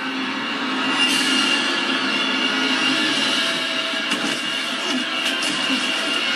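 Soundtrack of a horror TV episode playing through the room: a steady, dark, rumbling drone with a few sustained tones over it, typical of a suspense score and ambience.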